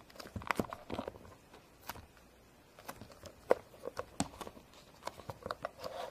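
Irregular light clicks and taps of plastic toy parts being handled while play dough is pressed into a plastic mold.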